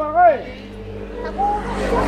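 A car approaching, its engine and tyre noise growing louder toward the end.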